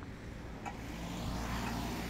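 A car passing close by on the street, its engine and tyre noise swelling to a peak near the end.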